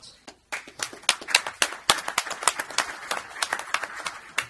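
Audience applauding, the clapping starting about half a second in.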